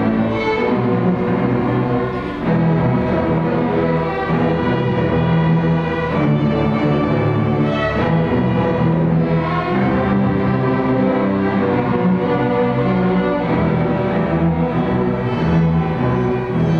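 A student string orchestra playing live: violins, violas, cellos and double basses bowing together in a continuous passage.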